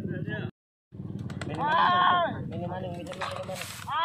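Men shouting drawn-out calls at a racing-pigeon sprint, the shouts pitched high and arching up and down. The sound drops out completely for a moment about half a second in, and there is a short hiss near the end.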